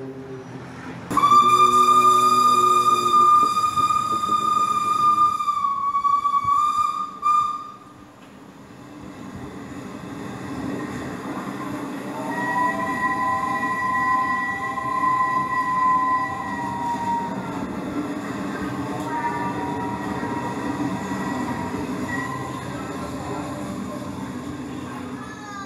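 A train whistle blows one long blast of about six seconds, steady in pitch with a slight dip near its end. After a pause, a second, chord-like train whistle or horn sounds for about five seconds over the steady low rumble of a train, with a shorter, fainter blast a few seconds later.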